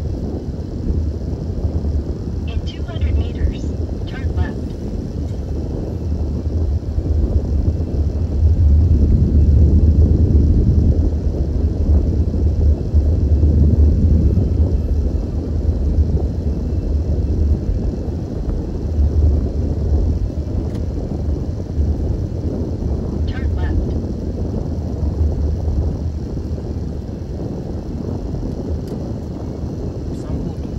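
Car interior road noise while driving: a steady low rumble of engine and tyres, swelling a little for a few seconds near the middle. Two brief high-pitched sounds come through, once near the start and once past the middle.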